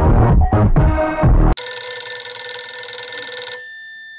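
Loud dance music with a beat cuts off abruptly about a second and a half in. A telephone then rings electronically for about two seconds and fades near the end.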